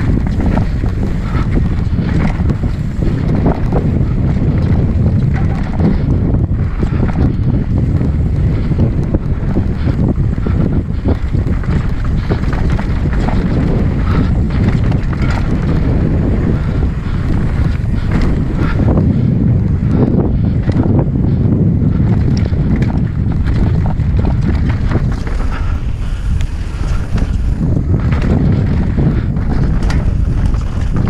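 Wind buffeting the microphone of a camera on a mountain bike descending a dirt singletrack, over a steady rumble of tyres on dirt and rock. Frequent short knocks and rattles come from the bike jolting over the rough trail.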